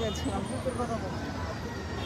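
Steady low hum of road traffic under quiet, faint talking.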